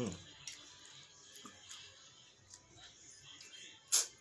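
A man hums a short 'mm' of enjoyment while eating. Then come soft chewing and mouth clicks as he eats barbecue chicken, and one sharp click near the end.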